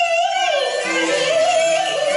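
Female Cantonese opera singer, amplified through a handheld microphone, comes in suddenly on a high held note that wavers and dips in pitch, over instrumental accompaniment.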